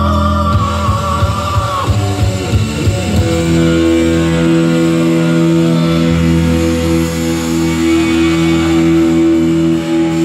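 Heavy metal band playing live: electric guitars, bass and drums. A held high note ends about two seconds in, then long sustained chords ring through the rest.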